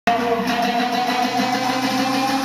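Live concert music over a hall's PA, recorded from within the audience: steady held tones over a dense wash of noise, beginning abruptly.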